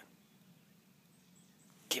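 Near silence: faint outdoor background, broken by one short, sharp sound just before the end.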